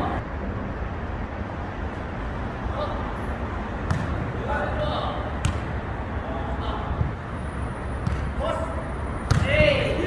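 Jokgu rally: several sharp thuds of the ball being kicked and bouncing on the turf, a second or more apart, with short shouts from the players between them. A steady low rumble runs underneath, and the loudest shout and kick come near the end.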